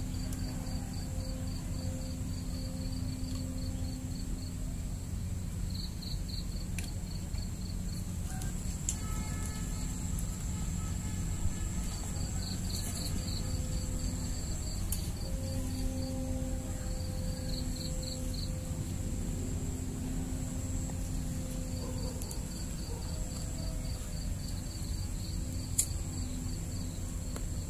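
Insects chirping outdoors in repeated bursts of rapid high-pitched pulses, over a steady thin high whine and a low background rumble.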